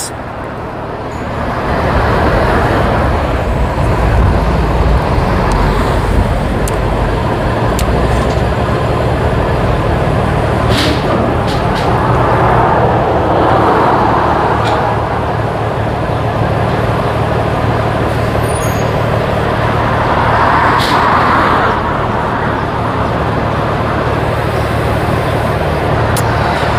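Road traffic going by, a steady rumble with several vehicles swelling up and fading as they pass, about three times.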